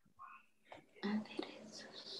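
Faint, low speech: a brief murmur near the start, then from about a second in a soft whisper-like voice over the video call.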